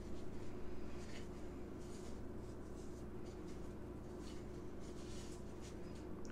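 Raw chicken wings being tossed and rubbed by hand in a bowl of dry seasoning rub: soft, irregular scratchy rubbing of skin and fingers against the powder and bowl, over a faint steady hum.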